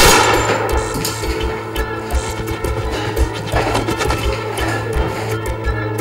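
A single loud revolver shot with a ringing tail, over background music with a steady beat. A second, softer burst of noise comes about three and a half seconds in.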